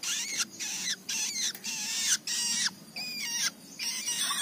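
Young long-tailed shrike calling in its cage: a series of short, harsh calls, about two a second, with brief gaps between them.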